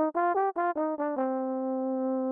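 Sampled tenor trombone playing a quick run of short, accented notes, about five a second, then holding one long note from about a second in. Its volume panning is being swept across the stereo field, so the sound moves from side to side.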